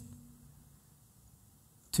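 Near silence: faint room tone in a pause between spoken phrases. The last word's echo fades away at the start, and a man's voice starts again right at the end.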